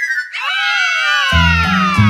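A cartoon-style sound effect: several tones rise briefly, then slide down in pitch together over about a second and a half. About halfway through, the background music's bass line comes back in.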